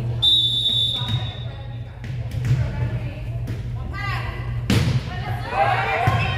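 Referee's whistle: one long, steady, high blast. About three seconds later comes a sharp smack as the volleyball is served, then shoes squeaking and players calling out as the rally starts, over a steady low hum in the gym.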